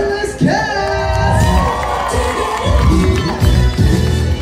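Pop dance music with a steady bass beat playing loud over the deck sound system. Partway through, a crowd cheers and shouts over it for about two seconds.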